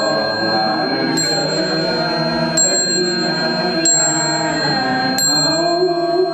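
Buddhist chanting with a small high-pitched bell struck at a steady pace, about every 1.3 s, four strikes in all, each ringing on over the sustained chant.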